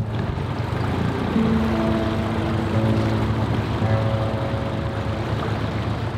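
Dinghy outboard motor running steadily under way, with the rush of water against the hull. Soft background music with long held notes plays over it.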